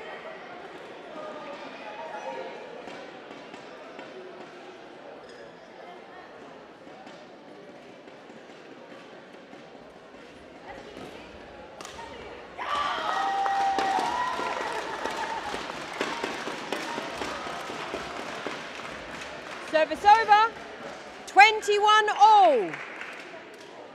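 Badminton rally in a large indoor sports hall, with sharp racket strikes on the shuttlecock. Crowd noise rises suddenly about halfway through, and loud shouts break out twice near the end as the rally is won.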